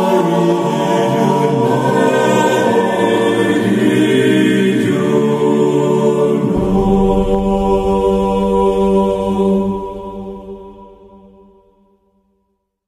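Choir chanting in Gregorian style, sustained held notes in layered harmony; a deep low bass layer joins about halfway through. The music then fades out to silence over the last two seconds, the end of a track.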